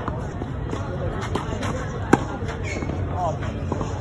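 Tennis ball struck by a racket: a few sharp hits, the loudest a single crack about two seconds in.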